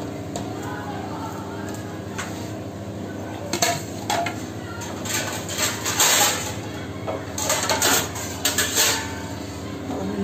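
Kitchenware clattering: a stainless steel bowl and a plate knocking and clinking as they are handled, a couple of knocks about three and a half seconds in, then a busier run of clatter through the second half.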